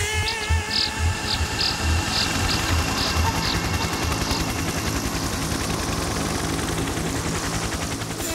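Instrumental break in an old Tamil film song, with no singing: a drum beat of low thumps and bright taps, about two a second, that drops out about halfway, leaving a busy steady backing.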